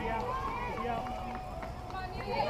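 Background voices of spectators and players talking and calling out, several at once, fainter than the cheering around them.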